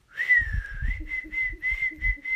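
A woman whistling through pursed lips: a long note that dips and rises again, then a run of short repeated notes at the same pitch. Puffs of breath on the phone's microphone sound under each note.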